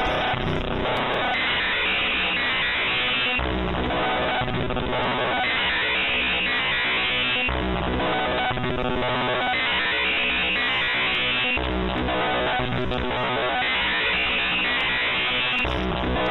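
The Monoxide.exe malware's audio payload: harsh, grating synthesized bytebeat noise-music played loudly and without a break, its pattern switching about every four seconds. It is terrifying to hear.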